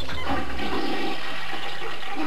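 A comic sound effect: a loud rushing, gushing noise like water being flushed, with the deep rumble under it falling away a little under a second in.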